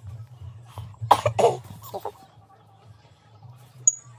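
A person coughing twice in quick succession about a second in, with a fainter third cough shortly after, over a low steady hum. A short high click comes near the end.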